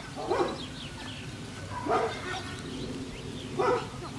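A dog barking: three short barks, about a second and a half apart.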